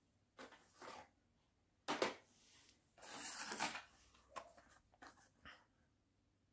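Hot Wheels blister-card packaging being handled: cardboard and clear plastic rustling and clacking, with a sharp knock about two seconds in and a longer rustle about a second later.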